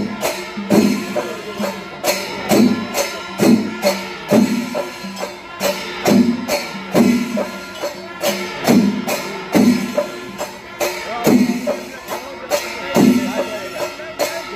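Festival percussion music: a strong drum beat a little faster than once a second, with jingling cymbal-like strokes and steady held tones running over it.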